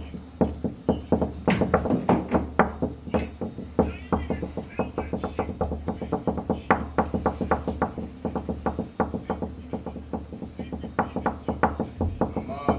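Knuckles knocking on a wooden door, a fast, steady run of knocks, about four a second, kept up without a break.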